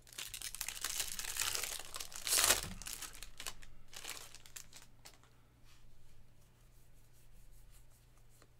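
A 2024 Bowman Baseball jumbo pack's wrapper being torn open and crinkled by hand, with a loud rip about two and a half seconds in, then fading to a faint rustle of wrapper and cards.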